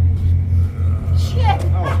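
A steady low rumble with a slow pulse, and near the end a person's startled cry, "oh, no", as the bush prank is sprung.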